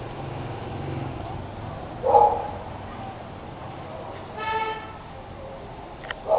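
A short vehicle horn toot about four and a half seconds in, over a steady low background hum typical of street traffic. A brief, louder sound comes about two seconds in.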